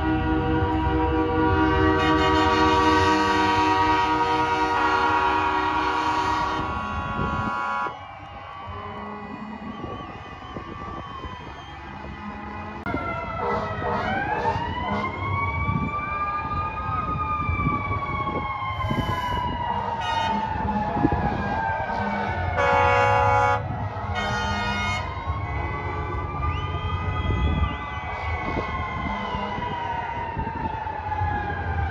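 Fire engine siren wailing, sweeping slowly up and down in pitch over several seconds at a time, with a loud horn blast and a few short toots partway through. Before the siren starts there is a loud chord of sustained tones that shifts a few times and cuts off about eight seconds in.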